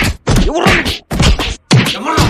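Stick blows landing on a body in quick succession, about three a second, with a man crying out in pain between them.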